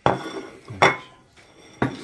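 Ceramic plates clattering: three sharp knocks with brief ringing as plates are set down and shifted on a wooden table, the middle one the loudest.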